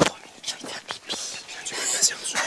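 Hushed whispering between people, with no voiced tone, broken by a few sharp clicks.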